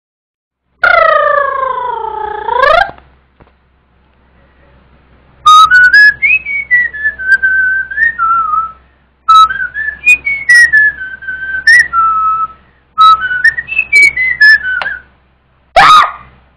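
Beatboxer's vocal sound that slides down and back up, then a whistled melody in three phrases with sharp clicks at many of the note starts.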